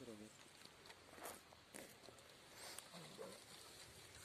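Near silence, with faint, low voices and a few soft rustles and clicks as the people move among the bushes.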